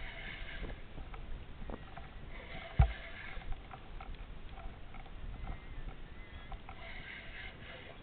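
Water lapping against a plastic kayak hull in light chop, with one sharp thump against the hull about three seconds in.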